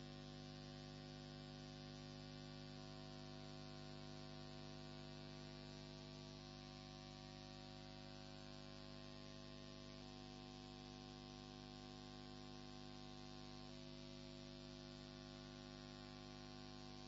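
Near silence apart from a steady electrical hum, with faint steady tones above it that shift slightly a few times.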